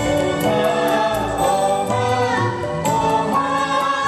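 A group of men and women singing a theme song together as a choir over instrumental backing.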